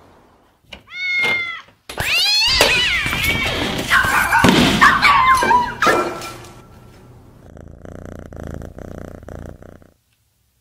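A cat meows once, then several cats yowl and caterwaul over one another, with thuds and knocks, for about four seconds. A fainter, patchy noise follows and cuts off just before the end.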